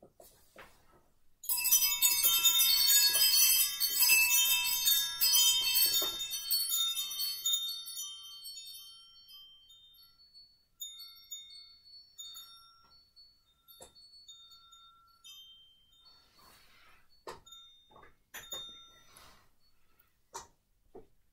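Set of metal chimes sounding: a sudden burst of many high ringing notes starting about a second and a half in, thinning after a few seconds into scattered single tinkles that fade away. A few soft clicks and rustles come near the end.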